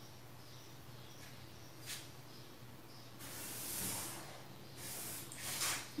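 Faint handling sounds of a pen and a clear plastic curved ruler on a paper pattern on a table. There is a short click about two seconds in, then several soft swishes of ruler and paper sliding in the second half.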